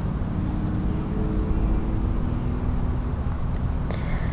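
Steady low outdoor rumble picked up by binaural microphones, with a faint humming tone through the middle.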